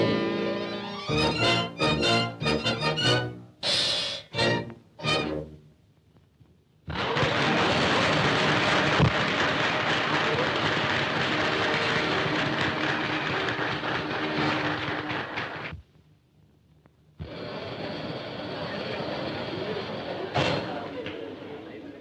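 A dance band with brass finishes a swing number with a few separate closing chords. After a short pause an audience applauds steadily for about nine seconds, and after a second brief gap a quieter spell of crowd noise follows.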